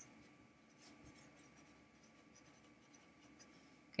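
A felt-tip marker writing on paper: faint, short scratching strokes as a line of words is written by hand.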